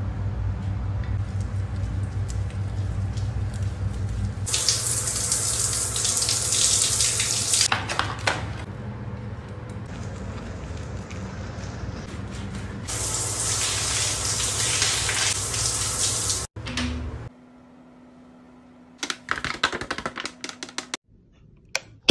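Running water in two loud spells of spray, each a few seconds long, over a steady low rumble. After a sudden cut, a quieter stretch with a faint steady hum and a few clicks near the end.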